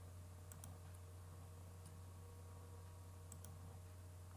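Near silence over a steady low hum, with a few faint computer-mouse clicks: a close pair about half a second in, one near two seconds, and another pair a little past three seconds.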